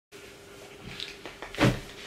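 A person shifting position while seated on the floor: a few light knocks, then a single dull thump about one and a half seconds in, over quiet room tone with a faint steady hum.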